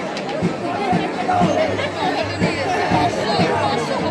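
A large festival crowd shouting and chanting all at once, many voices overlapping, over music with low, semi-regular thuds and a steady low hum.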